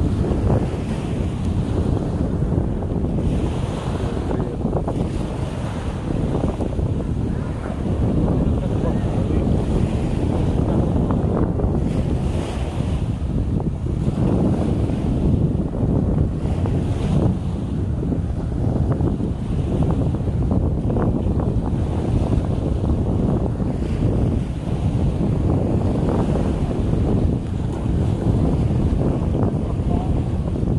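Wind buffeting the microphone over small waves breaking and washing up a sandy beach, a steady rushing with a heavy low rumble.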